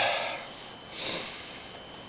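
A man breathing between phrases: an airy breath out fading away, then a short sniffing breath in about a second in.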